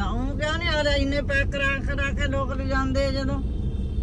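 A woman talking inside a moving car's cabin, over the steady low rumble of the engine and road noise.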